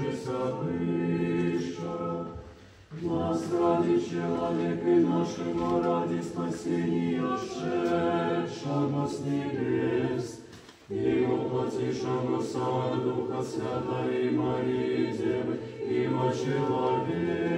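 Small mixed church choir singing Orthodox liturgical music a cappella, in sustained chords, with short breaks between phrases about three seconds in and again near eleven seconds.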